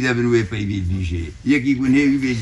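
An elderly man speaking, with a brief pause just before the end.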